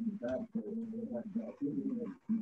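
Low bird cooing from a dove: several held calls in a row, each broken by a short pause.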